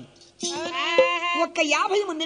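A man's voice in a drawn-out, wavering vocal phrase over a steady drone note, starting about half a second in and breaking into quicker speech near the end.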